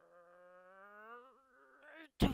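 Faint, drawn-out growled 'rrrr' in a person's voice, voicing a villain's frustration, its pitch rising slowly with a brief wobble partway through.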